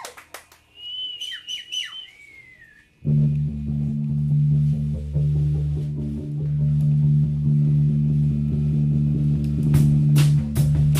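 A live shoegaze band starts its next song: after a brief high wavering tone, a loud, steady, low droning chord from electric bass and guitars comes in suddenly about three seconds in and holds. Drum hits join near the end.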